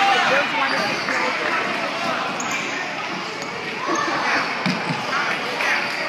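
A basketball bouncing a few times on a hardwood gym floor, with voices echoing in the hall.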